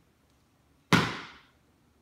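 One loud, sharp stomp of a foot on a hardwood floor about a second in, with a short echo dying away over about half a second.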